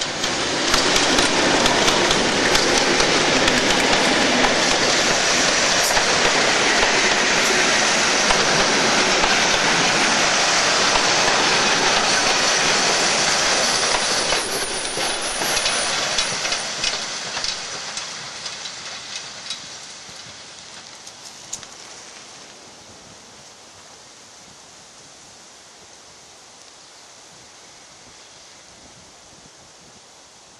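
A Class 31 diesel locomotive hauling a train of coaches passes close by, loud for about the first half. As the coaches go by the sound fades steadily, with a run of wheel clicks over the rail joints, and it dies away to a faint hush as the train recedes.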